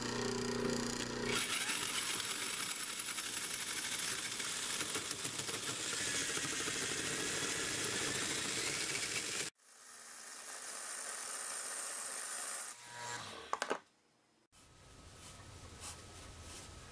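An electric motor hums briefly, then a hole saw cuts into a spinning wooden blank on a wood lathe with a steady grinding noise. The noise cuts off suddenly about nine seconds in and gives way to quieter machine noise, with a few sharp clicks and a short break near the end.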